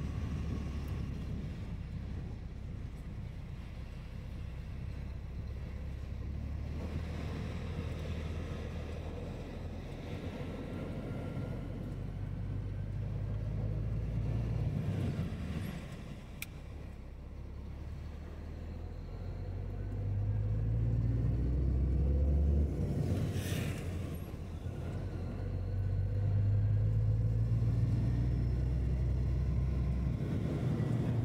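Vehicle engine and road noise heard from inside a moving vehicle: a steady low drone that swells and climbs in pitch twice in the second half as the vehicle speeds up, with one brief sharp noise about two-thirds of the way through.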